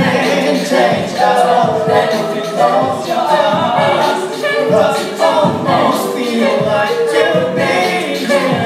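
An a cappella vocal group singing in harmony into handheld microphones, several voices at once with no instruments.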